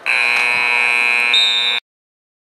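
Football field scoreboard horn sounding one steady electronic buzz for nearly two seconds. Its tone shifts slightly near the end, then it cuts off suddenly.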